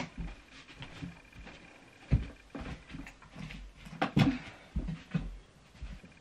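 Scattered knocks, bumps and rustles of a person moving about and handling things in a small room, loudest about two and four seconds in. The hair dryer is not running.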